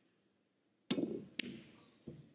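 Snooker cue tip striking the cue ball with a sharp click, then about half a second later a second click as the cue ball hits the object ball on a long pot attempt that misses by a mile. A gasp from the player follows.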